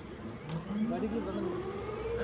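An engine whine rising slowly and steadily in pitch, with people's voices over it from about half a second in.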